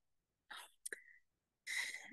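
Faint breath and mouth noises from a speaker pausing between sentences: small clicks about half a second and a second in, then a short intake of breath near the end, just before speech resumes.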